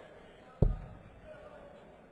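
A single steel-tip dart thudding into a bristle dartboard, picked up close by the board's microphone: one sharp, solid thump about half a second in.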